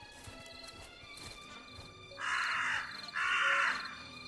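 Background music, with a crow cawing twice a little past two seconds in, each harsh caw lasting about half a second.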